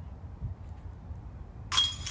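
Disc golf basket chains jangling as a putted disc hits them near the end, a sudden metallic clink and rattle heard from some distance: the putt is made. Before it, a low rumble of wind on the microphone.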